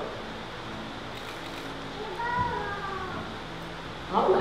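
A faint high-pitched voice with a wavering, gliding pitch, about two seconds in, over a steady low room hum.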